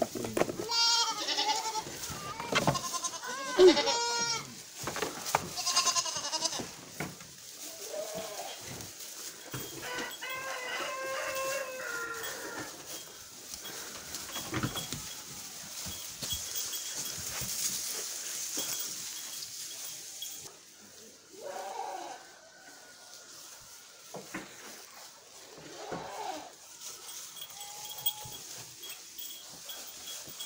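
Miniature goats bleating: several wavering bleats close together in the first six seconds, another longer one around ten to twelve seconds in, then occasional fainter calls.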